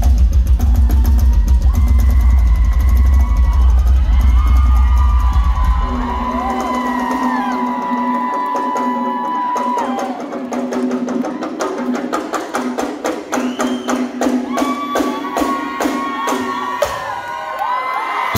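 Live rock drum solo on a full drum kit: dense strikes over a deep held bass note for the first six seconds, then quicker, more even hits under held and sliding pitched tones.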